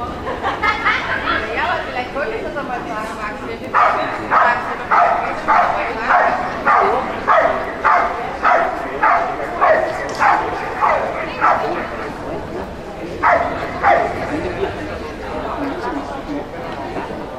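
Belgian Malinois barking steadily at a decoy, about one and a half to two barks a second for several seconds, then two more barks after a short pause.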